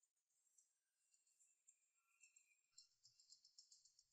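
Near silence: faint room tone with a little high hiss.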